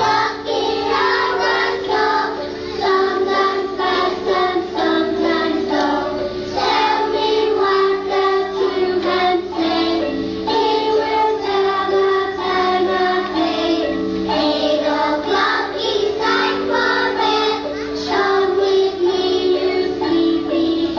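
A group of children singing a song together over instrumental accompaniment with held notes.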